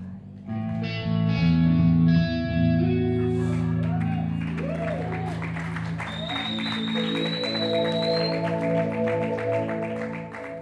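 Live band playing an instrumental passage: held keyboard chords under electric guitar, with a new chord coming in about half a second in and a thin high tone held for a couple of seconds past the middle.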